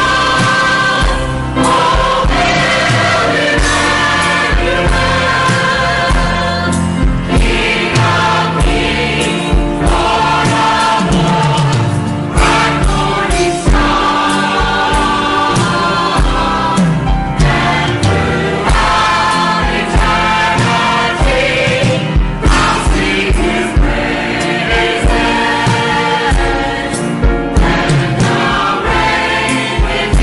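Church choir of men and women singing a gospel song, with steady low instrumental accompaniment under the voices.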